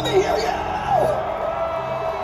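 A live rock band's sound system, heard from the crowd: a sustained note holds under a voice shouting and crowd whoops, in a lull between sections of the song.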